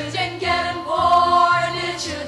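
Children's choir singing together, with sung notes held and changing about every half second.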